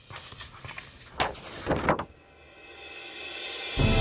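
Intro sound effects: two sharp swishes a little under a second apart, then a rising whoosh that builds into theme music starting just before the end.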